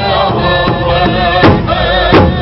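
Male drum group singing a Southern-style powwow intertribal song in chorus, high-pitched and together, over a large powwow drum struck with padded sticks. The drumbeats are light at first, then a loud beat lands about one and a half seconds in.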